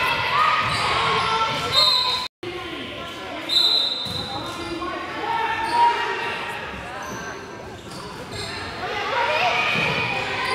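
Basketball game sounds in a large, echoing gymnasium: a ball bouncing, brief high squeaks of sneakers on the hardwood court, and players and spectators calling out.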